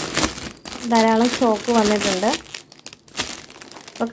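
Clear plastic film wrapped around folded cotton fabric crinkling as it is handled, in two spells: in the first second, and again from about two and a half seconds in.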